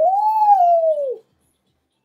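A woman's voice holding one long, high 'ooh', swooping up and then sliding slowly down for just over a second before breaking off.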